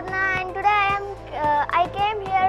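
A young girl speaking over background music with steady held notes.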